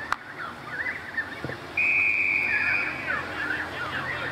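An umpire's whistle blown once: a single steady high-pitched blast of a little over a second, starting just under two seconds in and stopping play.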